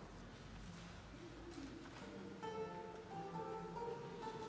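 Lute being plucked, quiet single notes starting a little over halfway through.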